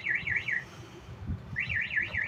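Vehicle alarm siren warbling rapidly up and down, about six sweeps a second, in repeating bursts. It stops about half a second in and starts again after a pause of about a second.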